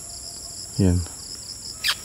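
Steady, high-pitched chorus of insects in dense vegetation, made of several even layers of shrill buzzing, with a brief sharp downward chirp near the end.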